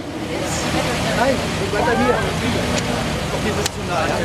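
Truck engine running at walking pace close by, a steady low rumble, with crowd chatter underneath and a single sharp click near the end.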